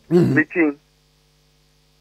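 A man's voice for a moment, then a pause in which only a faint steady electrical hum remains.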